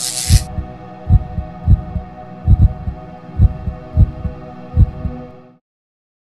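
Heartbeat sound effect: deep, loud thumps, some in lub-dub pairs, about once a second over a steady droning hum, in a logo sting. A short hiss ends just after the start, and all sound cuts off about five and a half seconds in.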